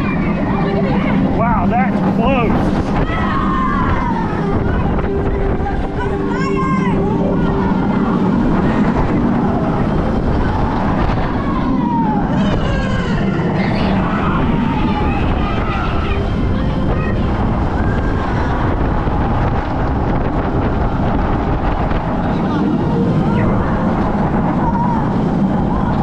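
Suspended roller coaster train running through its turns, heard from the rider's seat: wind rushing over the microphone and a steady low running hum from the train, with riders' shouts and squeals rising and falling throughout.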